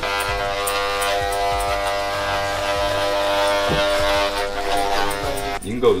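Electric hair clippers buzzing steadily at one unchanging pitch while cutting hair, stopping abruptly near the end.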